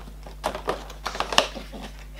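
Cardboard advent calendar door being pressed and pulled open by fingers: an irregular run of sharp clicks and crackles starting about half a second in.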